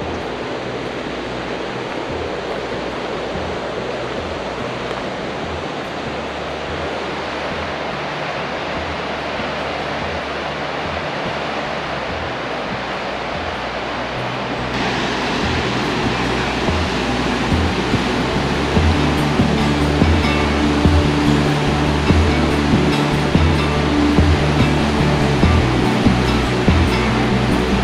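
Steady rush of whitewater rapids on the swollen Snake River. The rush gets louder and brighter about fifteen seconds in, and background music with a steady beat comes in on top soon after.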